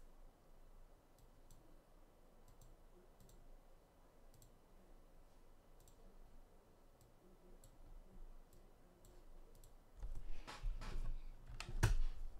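Faint, scattered clicks of computer input at a desk, a click every half second to a second, while a digital sketch is being moved and resized. In the last two seconds come louder rubbing noise and dull bumps.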